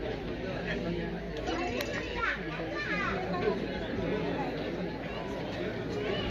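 Crowd chatter: many people talking at once in overlapping voices, with no single voice standing out.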